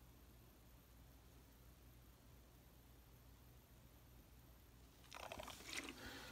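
Near silence while lighter fluid is squirted into a Zippo insert's cotton packing. About five seconds in, a short dry crinkling rustle of the insert and fluid bottle being handled.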